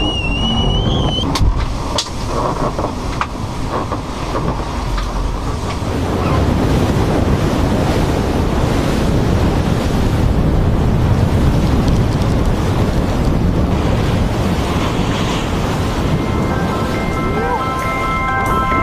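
Loud, steady rush of ocean water and surf with wind buffeting the microphone, growing louder about six seconds in. Music with held notes comes in near the end.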